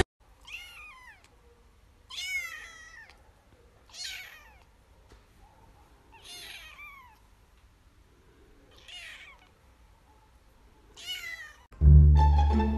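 Young kitten meowing: six short, high-pitched meows about two seconds apart, most of them sliding down in pitch.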